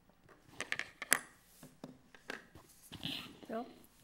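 Faint voices of a council roll call, names read out and members answering, with a quick run of sharp clicks about a second in, the loudest sounds here.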